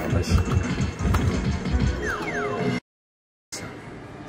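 Slot machine game music with a fast, thumping beat, ending in a few falling tones about two seconds in, then cutting off suddenly to silence for under a second before quieter machine sound returns.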